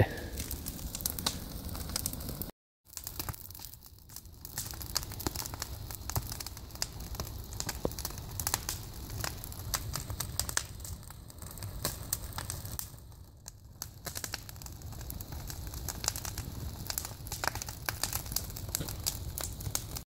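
Wooden pallets and pine brush burning in an open fire, crackling with many sharp pops. The sound cuts out completely for a moment about two and a half seconds in.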